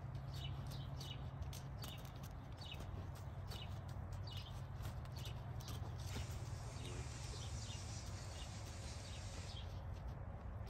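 Gaited horse's hoofbeats on soft arena sand: quick, irregular footfalls over a steady low rumble, with a brighter hiss joining from about six seconds in.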